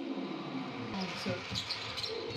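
Indoor basketball game sound: crowd noise in the arena with sneakers squeaking on the hardwood court, a few short squeaks about a second in and near the end.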